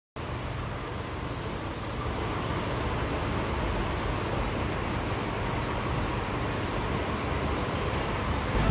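Steady background noise with a low rumble, unchanging throughout, like the room tone of an office.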